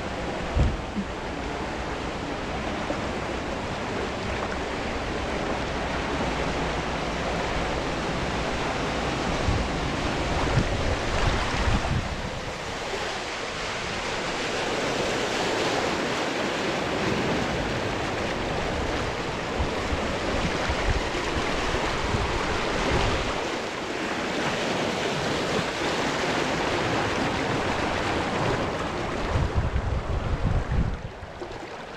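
Water rushing and splashing around a rider carried along a water-park wild-river current, heard from a camera at the water's surface. The churning gets louder in the middle, with a few brief low bumps of water against the microphone.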